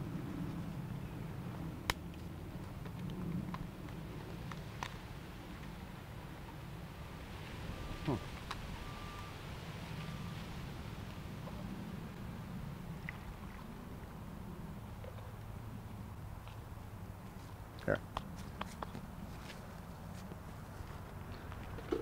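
Quiet outdoor background with a steady low hum and a few small clicks of handling, as dyed solution is poured from a small plastic cup through a funnel into a plastic infusion bag.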